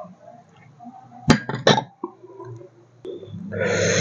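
Cut-glass soup bowl clinking as it is set down: a few sharp clinks with a short ring, about a second and a half in. Near the end a loud burp begins.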